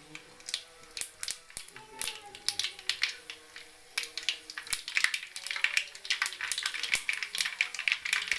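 Hot cooking oil in a kadai crackling and popping as it heats, the pops thickening after about four seconds. Faint voices are heard in the background.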